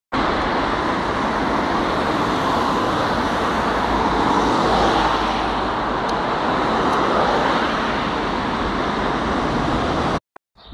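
Steady, loud vehicle noise: an even rush that holds level with no distinct events.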